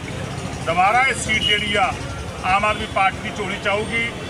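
A man speaking Punjabi in two phrases, over a steady low background rumble.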